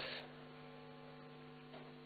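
Faint, steady electrical hum made of a few fixed tones, heard in a pause between spoken phrases.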